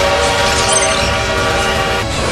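Steam locomotive whistle blowing one long, steady note that stops after about two seconds.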